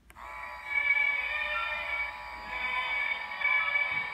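A button click, then a musical greeting card's sound chip playing a classical waltz melody in thin, beeper-like tones with no bass.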